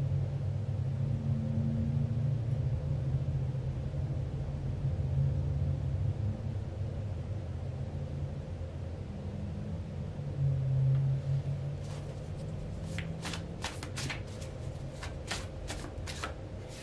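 Tarot cards being handled and shuffled: a quick run of short flicks and snaps over the last few seconds, over a steady low rumble.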